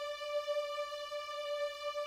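Sampled ensemble strings on the HALion Sonic SE software instrument holding one high D note, steady with a slight tremolo.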